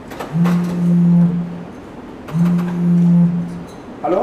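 Mobile phone sounding an incoming call: two low, steady buzzing tones, each just over a second long, with a short gap between.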